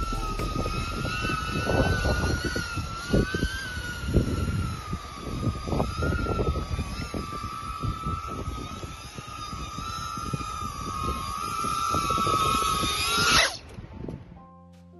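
A 2.5-inch micro FPV quadcopter's brushless motors and propellers whining in flight, the pitch wavering up and down with throttle, over a gusty rush of wind on the onboard microphone. The whine cuts off suddenly near the end.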